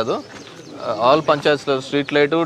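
Men talking in a street crowd, with a short pause less than a second in.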